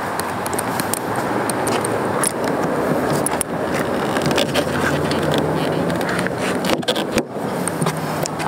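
Steady rushing background noise with a faint low hum, with scattered light clicks and scrapes from hands working a SeaSucker suction-cup bike rack's mount. Brief dropout about seven seconds in.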